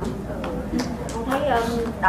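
Speech only: a woman speaking faintly, away from the microphone.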